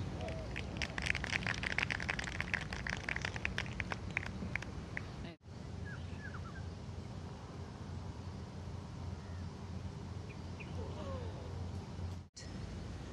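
Gallery applause, many people clapping for a few seconds after a golf approach shot finishes close to the pin, thinning out and stopping. Then quiet outdoor course ambience with a few birds chirping.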